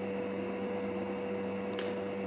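Steady room background: a constant low hum with a second, higher steady tone over a soft hiss, with one faint short click near the end.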